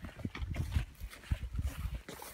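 Irregular soft thumps and rustling from footsteps and the handheld recording phone being jostled while walking.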